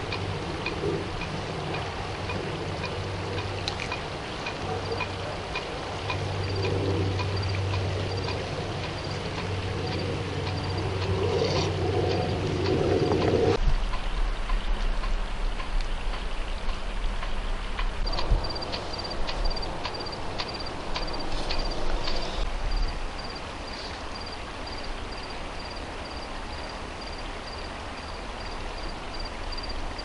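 A constant knocking, faint and evenly repeated a few times a second, over a steady rushing background noise.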